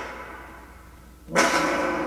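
Soundtrack of an animated clip: after a short fading lull, a sudden dramatic hit about a second and a half in, ringing on as a steady held tone like a gong or brass sting.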